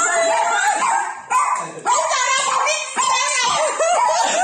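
High-pitched yelping cries in short rising and falling arcs, mixed with speech, with a brief lull a little past a second in.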